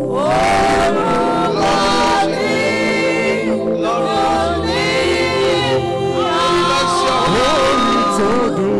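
Gospel worship singing by a group of voices, held sung phrases over a steady sustained instrumental accompaniment.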